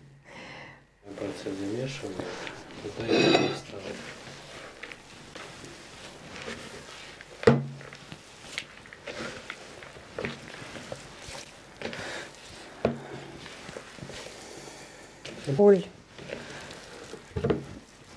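Hands kneading a sticky herb-filled dough in a plastic bowl: soft squishing and rubbing with scattered small knocks of the bowl. A sharp knock stands out about seven and a half seconds in.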